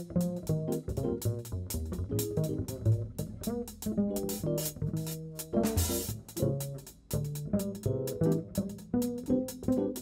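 Upright double bass played pizzicato in a jazz line, a quick run of plucked notes with string clicks at their attacks. A brief noisy burst sounds about six seconds in.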